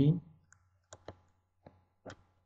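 A few light, sharp clicks, unevenly spaced, from a computer input device as handwriting is added on screen. The tail of a spoken word is heard at the very start.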